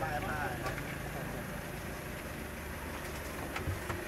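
Faint voices in the first second over a low, steady outdoor hum, with a couple of soft knocks near the end as bags and boxes are handled.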